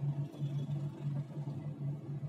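Low hum inside a moving cable car cabin, pulsing a few times a second.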